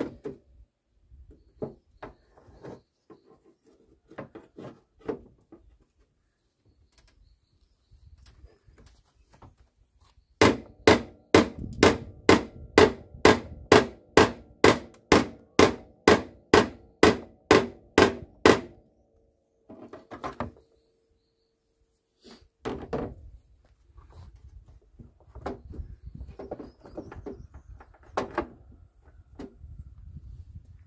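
Hammer blows on a Volvo V70's front fender while the panel is pried outward, knocking a kink out of the bent sheet metal to restore its shape. A quick run of about twenty sharp strikes, roughly two and a half a second, each ringing briefly, with lighter scattered knocks before and after.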